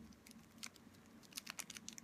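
Faint small clicks and crinkles of thin plastic being handled and pressed around a wire spoon frame, with a cluster of light ticks in the second half.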